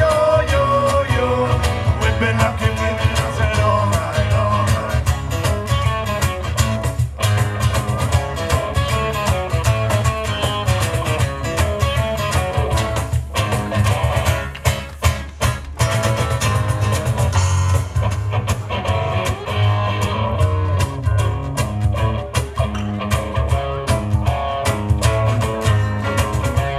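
Folk-rock band playing an instrumental passage: an accordion melody over guitar, bass and drums with a steady beat.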